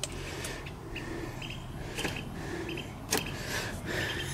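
A few clicks from the dashboard light switch of a 2011 Chevy Traverse as it is worked by hand, the sharpest and loudest about three seconds in, over short repeated bird chirps.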